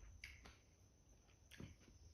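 Faint eating sounds as fried rice is gathered by hand from a clay pot: two short soft clicks, one a quarter second in and one about a second and a half in.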